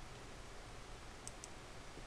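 Quiet room tone with a steady low hum and two faint, light ticks a little past a second in.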